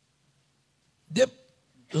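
A man's voice through a microphone saying one short word about a second in, after a second of near silence.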